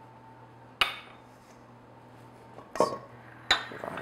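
Kitchen utensils and a stainless steel mixing bowl clinking as they are set down and moved on a stone countertop: three short sharp clinks, about a second in, near three seconds and near the end.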